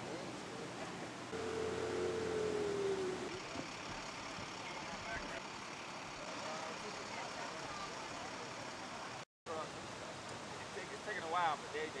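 Steady outdoor noise with scattered faint voices in the background. About a second in, a held tone sounds for about two seconds and sags slightly in pitch at its end. A little after nine seconds the sound drops out completely for a moment.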